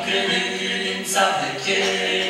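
Male voices singing a Romanian Christian hymn a cappella in harmony through microphones, holding long notes, with a new sung syllable about a second in.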